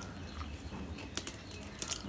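Eating sounds: rice and fish curry mixed by hand on a steel plate while chewing, with a few sharp wet clicks, two of them standing out a little after a second in and near the end.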